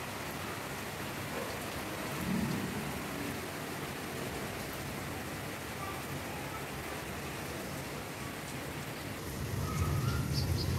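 Steady rain falling on a rooftop garden's leaves and surfaces, an even hiss, with a brief low rumble about two seconds in and another swelling near the end.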